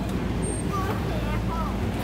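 Steady low rumble of a busy warehouse store, with faint voices in the background.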